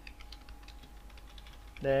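Computer keyboard being typed on: a run of light, irregular key clicks as a word is entered.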